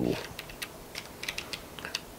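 Pages of a book being leafed through to find a passage: a quick, uneven scatter of light crisp clicks and rustles.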